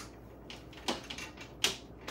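Flat iron clicking as its plates close and open on sections of hair, with a rat-tail comb working alongside: a few short sharp clicks, the loudest two about a second in and near the end.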